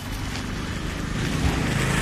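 A motor vehicle going by on the road, its engine hum and tyre noise growing louder about a second in.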